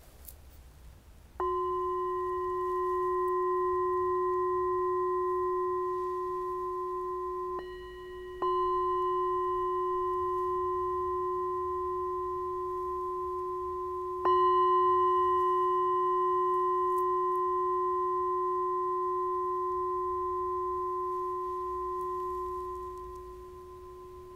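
Metal singing bowl held on the palm and struck with a mallet about four times, the second and third strikes close together. Each strike rings on with a low hum and clear higher overtones that slowly fade away.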